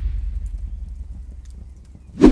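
The fading tail of a flame-burst whoosh sound effect, dying away with faint scattered crackles.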